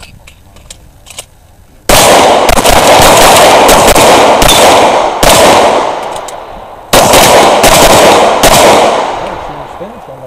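Handgun fired in rapid strings, very loud close to the microphone, each shot ringing out. The first shot comes about two seconds in, and there is a short lull near seven seconds before the shooting resumes and ends shortly before the close.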